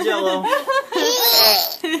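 Several people laughing together, their voices overlapping, with a higher, shriller laugh in the second half and a word or two spoken among the laughter.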